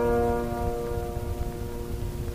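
Music: a plucked string instrument's note ringing out and slowly fading.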